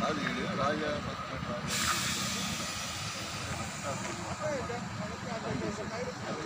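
Roadside traffic noise: a car passing on the highway with a steady hiss of tyres and road noise, and people talking faintly in the background.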